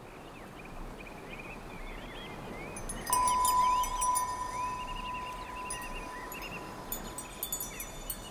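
A chime struck about three seconds in: one clear ringing note that slowly fades, with light high tinkling near the end, over a soft steady wash of background noise.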